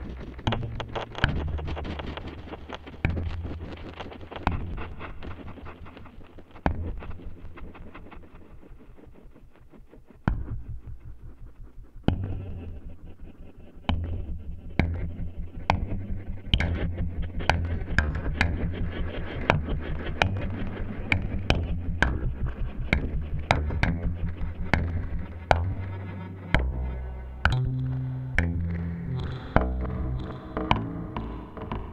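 Eurorack modular synthesizer patch playing: an Usta sequencer stepping a Brenso oscillator through a low bass line, with sharp percussive clicks on top. It thins out and drops in level around the middle, then comes back with denser, evenly spaced hits, and the bass steps up to higher notes near the end.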